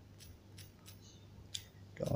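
Faint, irregular clicks of typing on a phone's on-screen keyboard, about half a dozen taps, the clearest one near the end.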